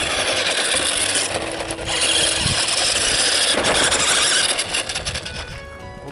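Remote-control toy ATV driving over gravel, its motor and tyres making a dense, gritty noise that is loudest in the middle seconds and fades near the end.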